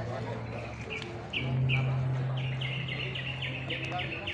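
A bird calling in a series of short, quick chirps. They start sparse about a second in and then come about five a second. A steady low hum runs underneath.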